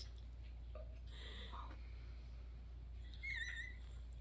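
Mostly quiet room, then about three seconds in a short, faint, high wavering squeak: a person's strained vocal whimper at the burn of a swallow of cask-strength Scotch.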